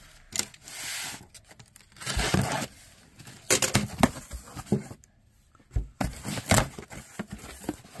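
Packing tape being ripped off a cardboard shipping box and the cardboard flaps pulled open, in several short bouts of tearing and scraping, with a brief pause about five seconds in.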